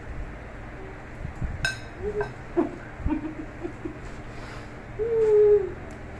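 A person's voice humming: a few short, soft hums, then one longer hum near the end that drops a little in pitch at its close. A sharp click comes about one and a half seconds in.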